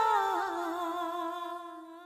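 A singer's long held note, hummed, in a Hindi film song: it steps down in pitch about half a second in and then fades out.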